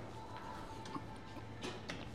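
A few faint, light clicks from a weight-stack chest machine as its handles are worked, over a low steady hum. The two clearest clicks come in the second half.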